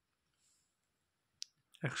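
Near silence broken by one short, sharp click about one and a half seconds in, just before a man starts speaking.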